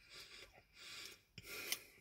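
Faint chewing of a mouthful of cinnamon-sugar pretzel-crust Pop-Tart, three short chews about half a second apart.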